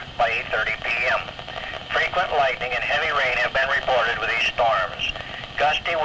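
Speech only: an announcer reading a special marine warning on a NOAA Weather Radio broadcast, heard off a radio receiver and thin in tone.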